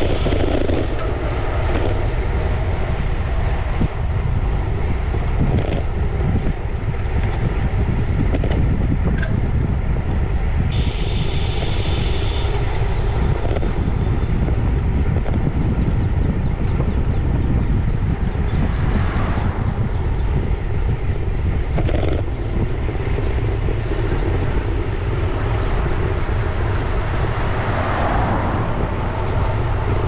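Wind buffeting the microphone of a bike-mounted camera while riding a road bike, a loud, uneven low rumble with tyre noise on tarmac under it. A brief higher hiss about eleven seconds in.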